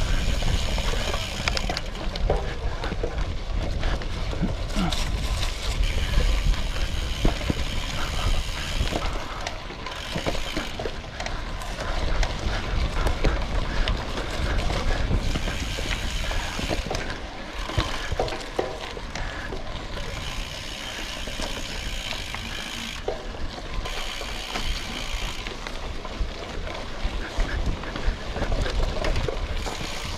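Framed Basswood carbon gravel bike riding fast over a dirt and leaf-covered singletrack: continuous tyre noise with frequent rattles and knocks from the bike over bumps and roots. Steady low rumble of wind on the microphone.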